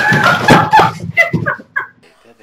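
A woman laughing loudly: a long burst of cackling laughter, then several short bursts of laughter.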